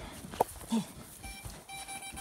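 A sharp click, then a high steady electronic-sounding beep repeating in several short pulses through the second half.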